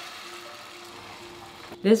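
Whisked egg sizzling in a hot frying pan, a steady hiss that eases off slightly as it goes.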